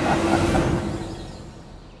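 A rushing, rumbling sound effect with a steady low hum, fading away over about a second and a half.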